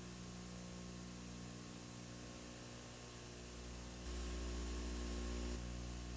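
Dead air on an old broadcast recording: a steady low electrical hum with hiss, the hum growing louder about four seconds in.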